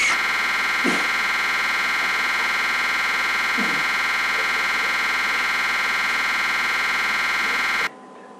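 Loud, continuous electronic buzz from a crashed Windows virtual machine, its sound buffer stuck repeating the same fragment over and over after the system crash. It holds steady and cuts off suddenly near the end.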